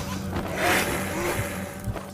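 Cinematic sound design for an animated logo intro: a steady low drone, with a noisy whoosh swelling about half a second in and fading away.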